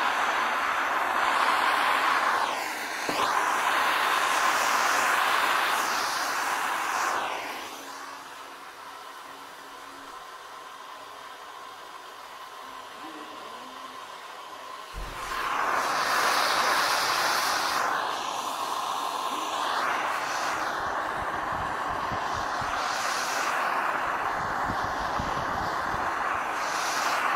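Gas torch flame hissing steadily as lead body solder is heated on a car door bottom. It quietens for about seven seconds midway, then comes back loud.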